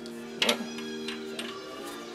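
Background music holding a steady chord, with a single knock about half a second in from the old stock exhaust muffler being handled as it comes off.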